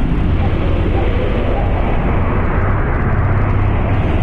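Sci-fi spaceship sound effect: a loud, steady low rumble with a deep hum underneath.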